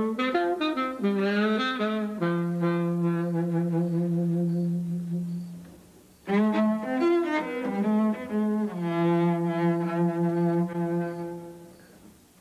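A saxophone plays a phrase of quick notes that ends on a long held low note; after a short break about six seconds in, a cello answers with the same phrase, ending on the same held note.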